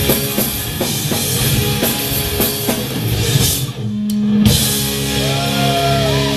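Live rock band with drum kit and electric guitars playing at full volume, the drums keeping a steady beat. About three and a half seconds in the band drops out briefly under one held low note, then comes back in with guitar notes sliding in pitch.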